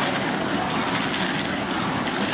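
Automatic cartoning machine running: a steady mechanical noise with faint light clatter.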